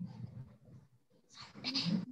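A brief vocal sound about halfway through, over low background noise.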